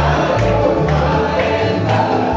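A live acoustic bluegrass band playing, with guitars, banjo, fiddle and upright bass, and several voices singing together in harmony. The bass steps from note to note about every half second under the singing.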